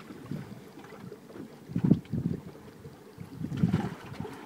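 Irregular dull bumps and knocks as a paddlefish is picked up off the boat floor and lifted, loudest about two seconds in and again near the end.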